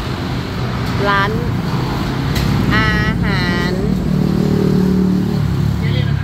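Street traffic passing close by: a steady low rumble of car and motorcycle engines, with one engine note standing out and growing louder for about a second and a half, about four seconds in.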